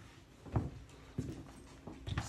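Slow steps with M+D forearm crutches and a walking boot: three dull thuds of the crutch tips and boot on the floor, about two-thirds of a second apart.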